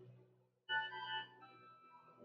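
Organ playing: a low note held over, then a new chord about two-thirds of a second in that fades away.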